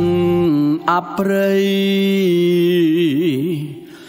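A man singing a slow Khmer song: a few short phrases, then a long held note that wavers in pitch near the end and fades out. The bass of the backing drops out about half a second in.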